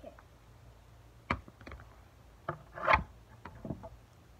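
Hands handling a small toy or object: a handful of scattered knocks, taps and rustles, the loudest about three seconds in.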